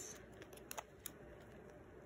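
Near silence with a few faint, short clicks of a hamster nibbling at food on a plate.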